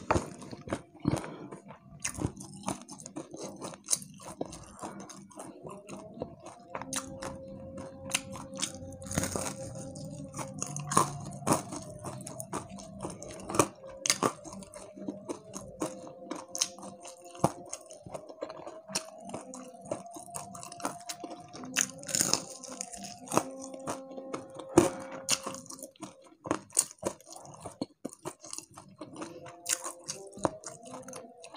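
Close-miked biting and chewing of crispy deep-fried catfish, with many sharp crunches of the fried batter.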